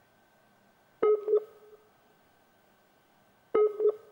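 Two identical short electronic beeps, each a quick double pulse, about a second in and again about two and a half seconds later, over a faint steady whine. These are alert tones from a faltering video-call link.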